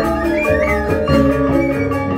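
Balinese gamelan playing: tuned bronze metallophones struck in a fast, dense, interlocking rhythm.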